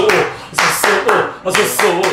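A man chanting 'sosō, sosō' in a quick rhythm while clapping his hands in time: the Japanese drinking-party call (コール) that urges someone to drink.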